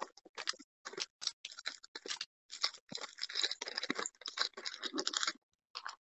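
Plastic cookie packaging being handled, crinkling and rustling in short, irregular crackles, with a brief pause near the end.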